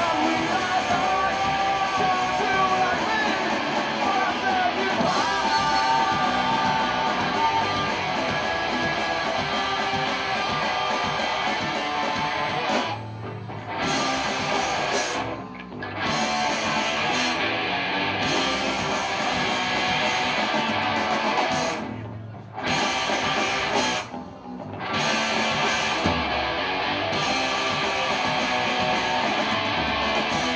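Live punk-rock band playing: electric guitars, bass guitar and drum kit. The whole band stops short for a moment four times in the second half.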